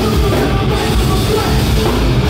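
Hardcore punk band playing live at full volume: distorted guitars and drums, with the vocalist shouting into the microphone.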